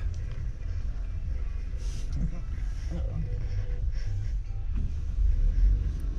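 Steady low rumble inside a car's cabin as the engine runs, with a few faint, brief sounds over it.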